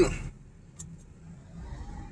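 Low, steady engine and road rumble inside a moving car's cabin, with a faint click a little under a second in.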